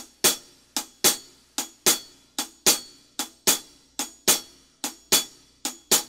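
Single drumstick strokes on a snare drum playing a slow shuffle with a down-up wrist motion. The hits come in a steady long-short triplet pattern, a little under one beat per second, and the downbeat strokes are slightly louder.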